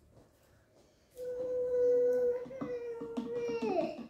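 A child's voice holding one long, steady note, starting about a second in and dropping in pitch at the end, with another child's voice breaking in over it.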